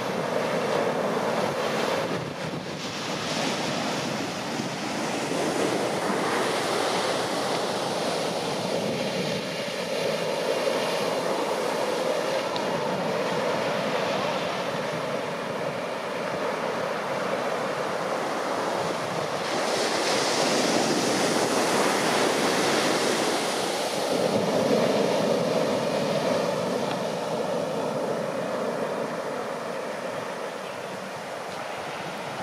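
Ocean waves breaking at a heavy shorebreak: a continuous rushing wash that swells into several louder surges as successive waves crash and run up the beach.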